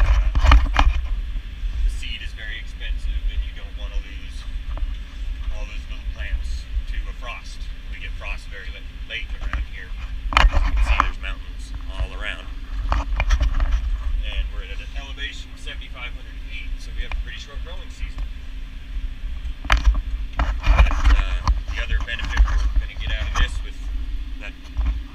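Tractor engine running steadily under load as it pulls a deep ripper through the field, heard from inside the cab, with frequent knocks and rattles from the cab and implement.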